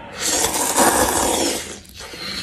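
A person slurping a mouthful of noodles, one loud slurp lasting about a second and a half.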